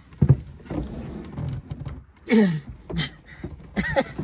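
A man climbing into the cramped driver's seat of a small sports car: a thump about a quarter second in, shuffling against the seat and door, then a laugh about halfway through.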